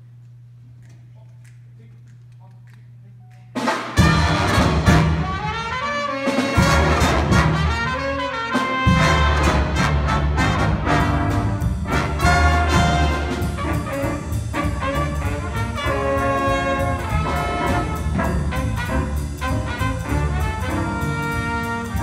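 A high school jazz big band of saxophones, trumpets, trombones, electric guitar and keyboards starts playing about three and a half seconds in, loud and led by the brass. Before it comes in there is only a low steady hum.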